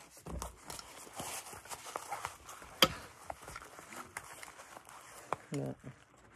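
Close handling noise of a black fabric item with straps: soft rustling and scattered small clicks, with one sharp click about three seconds in. A voice comes in near the end.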